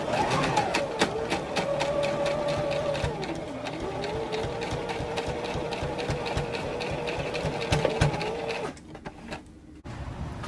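Electric sewing machine stitching linen: a steady motor whine with rapid even needle strokes. It slows briefly a few seconds in, picks up again, and stops near the end.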